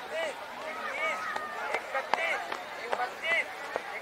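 Many men's voices calling and chattering at once over runners' footfalls on a dirt track, with a few sharp steps or taps standing out near the middle and near the end.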